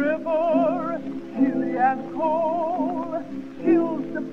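A female contralto singing a spiritual in an old 1926 recording, with a wide wavering vibrato on held notes over a sustained accompaniment.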